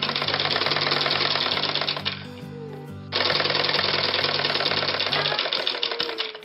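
Usha sewing machine stitching at speed, a rapid even clatter, in two runs with a pause of about a second between them. Background music with steady low notes runs underneath.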